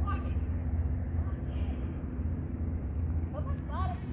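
Short calls from a handler's voice, heard from a distance, at the start, about a second and a half in and near the end, over a steady low rumble.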